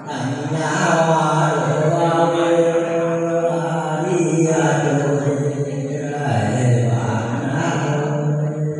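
A man singing a Mường folk song unaccompanied into a microphone, in slow, chant-like phrases of long held notes.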